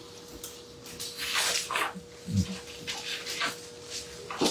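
Thin Bible pages rustling as they are turned, a few brushing strokes, with a brief low sound just past the middle and a faint steady electrical hum underneath.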